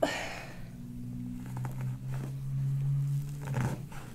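A breathy exhale, then a man's low, steady moan lasting about two and a half seconds, ending with a short breath near the end.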